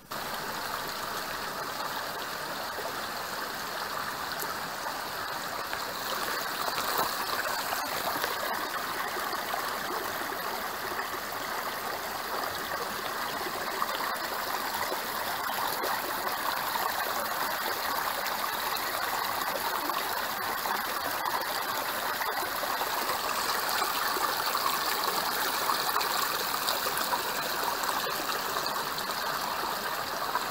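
A shallow rocky creek: water running steadily over stones and through a small cascade into clear pools.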